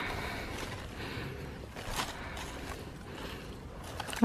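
Faint rustling and handling of leaves and cucumber vines being moved by hand, with a brief click about halfway through over a low rumble.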